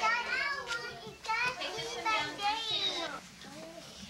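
Young children talking and chattering in high-pitched voices, too jumbled to make out words, quieter near the end.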